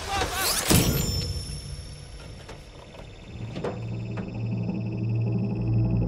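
A voice's cry ends just at the start, followed by a single loud thud about a second in. A few faint knocks follow in a quiet stretch, then a low, dark music drone swells in halfway through.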